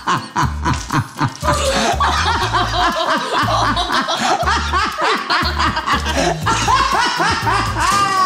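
A man laughing hard over background music with a regular bass beat.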